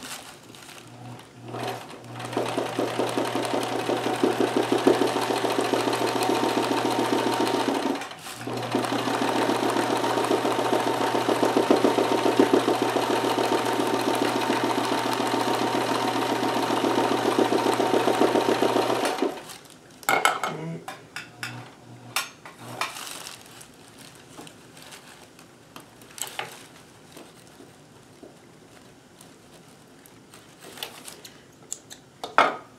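Kenmore 158.1914 sewing machine running at a fast, even stitch for free-motion embroidery, a steady motor hum under the rapid needle strokes. It stops briefly about eight seconds in, runs again, and stops about two-thirds of the way through. After that come only scattered light clicks from handling the hoop and snipping thread.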